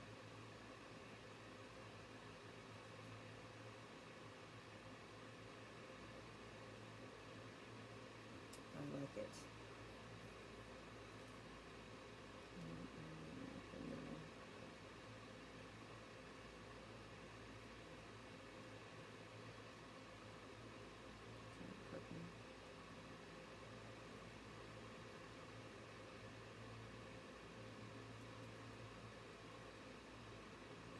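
Near silence: steady low room hum, broken by a few brief, faint voice sounds about nine seconds in, around thirteen seconds and around twenty-two seconds.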